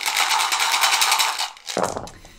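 Several small dice rattled fast and steadily in a dice cup, then tipped out near the end into a velvet-lined dice tray.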